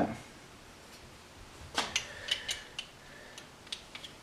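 Small metal parts of a centrifugal clutch being handled and fitted together during reassembly: a short scrape, then a handful of sharp, irregular clicks and ticks in the second half.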